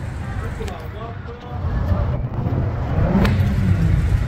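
Road traffic on a busy street: cars passing, a steady low rumble that gets louder about two seconds in.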